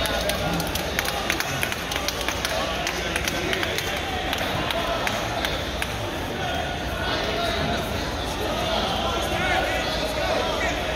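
Crowd chatter and voices calling out around the mats in a large gymnasium, with a scattering of short sharp knocks, most of them in the first few seconds.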